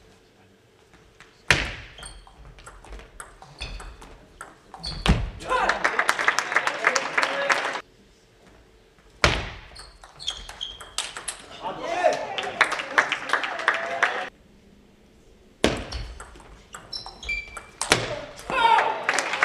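Table tennis rallies: the plastic ball clicking back and forth off the bats and the table in quick exchanges, three times over. Each exchange is followed by voices in the hall.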